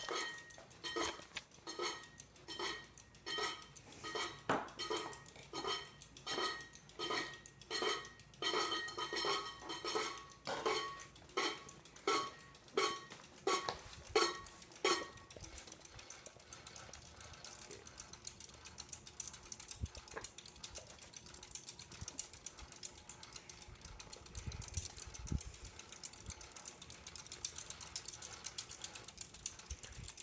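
Harbor Breeze Cheshire ceiling fan running on low while it sits on the floor, its turning parts scraping the side once a revolution: a rhythmic metallic clinking with a ringing edge, a little under two strikes a second. About halfway through it gives way to a fainter, steadier rattle with occasional clicks. The scraping comes from the fan resting on the floor rather than hanging.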